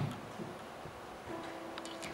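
A bump as a microphone is set into its stand, then light clicks and knocks as an acoustic guitar is taken from its stand. One of its strings rings faintly with a single steady note for about the last second.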